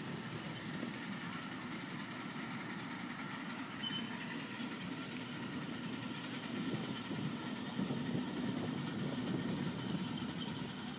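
A 1/3-scale steam locomotive, the Tamar, running with its train along the track, heard as a steady, rough rumble that grows louder in the second half.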